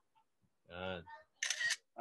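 A man's short wordless hesitation sound, then a brief hiss, in an otherwise quiet pause.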